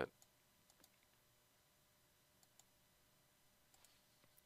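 Near silence, broken by a few faint, sharp clicks from someone working a computer: five or so, spread unevenly.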